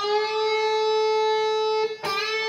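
Electric guitar note on the second (B) string, bent a whole step up from the eighth fret to the pitch of the tenth fret and held there steadily, then cut off just before the end.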